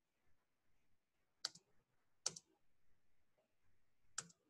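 Two short, sharp clicks a little under a second apart over near silence: a computer being clicked to advance a slideshow build.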